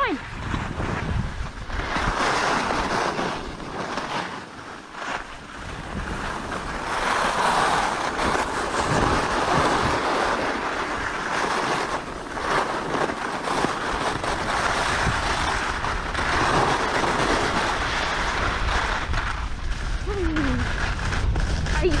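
Skis hissing and scraping over packed snow in swells with each turn, with wind buffeting the GoPro's microphone; the wind rumble grows heavier as the skier gathers speed toward the end.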